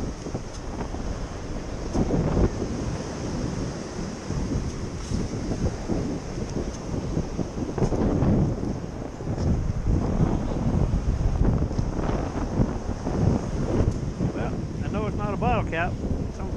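Wind buffeting the microphone in uneven gusts, over the wash of small waves running up the beach.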